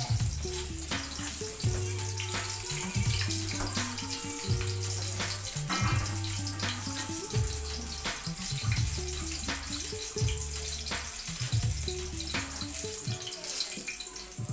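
Background music with a repeating bass line over the steady hiss of a rolled pork chop frying in oil in a steel wok.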